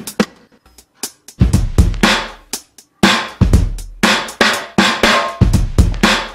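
Drum loop from the Drum Lab sampled drum-kit plugin playing back: heavy kick and snare hits with cymbals and long ringing decays. The groove comes in strongly after a brief lull in the first second and a half.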